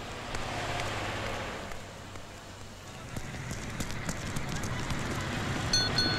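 Busy street sound with crowd chatter, and a city bus engine whose low hum builds and grows louder through the second half. A brief high-pitched squeal comes near the end.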